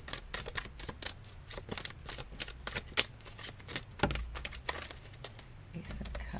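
A tarot deck being shuffled by hand: a quick run of soft card clicks and slaps, with a thump about four seconds in.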